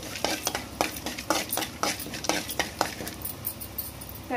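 A slotted metal spoon stirring and scraping in an aluminium kadai while tempering spices fry in a little oil. It is an irregular run of taps and scrapes, about three a second, each with a brief metallic ring.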